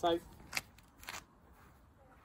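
Two short rustling noises about half a second apart, made by a golfer moving from the camera into his stance over the ball on a turf mat.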